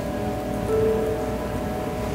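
Soft ambient background music of sustained, held tones over a steady rain-like hiss, with one extra note held briefly near the middle.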